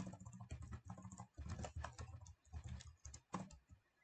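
Computer keyboard typing: a quick run of faint key clicks with brief gaps between them.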